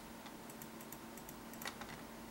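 Computer mouse clicking: a cluster of light clicks about half a second in and a sharper click near the end, over a faint steady hum.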